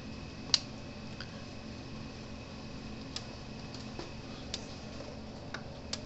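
Gallagher MBX2500 electric fence energizer, just switched on, ticking faintly as it pulses: a handful of short sharp clicks roughly a second apart over a low steady hum, with a louder click about half a second in.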